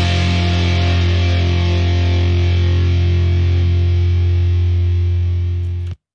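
A rock song mix playing back from a DAW: distorted electric guitars and bass hold one sustained chord that rings on and slowly fades, then cuts off abruptly near the end as playback is stopped.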